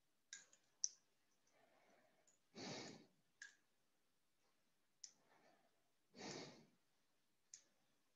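Near silence on an open microphone: a person's faint breaths about every three and a half seconds, with a few short soft clicks between them.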